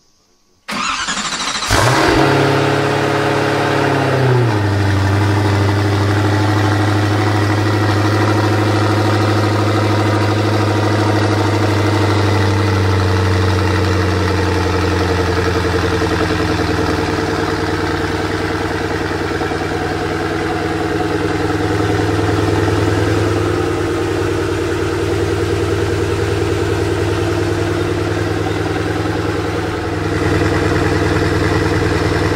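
Koenigsegg Agera RS's twin-turbo V8 started: the starter cranks briefly about a second in, the engine catches with a flare of revs, and within a few seconds it falls to a steady, loud idle.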